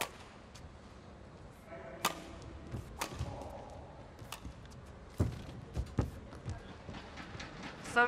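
A badminton rally: sharp cracks of rackets striking the shuttlecock, coming about once a second, with heavy footfalls and lunges on the court floor in the second half.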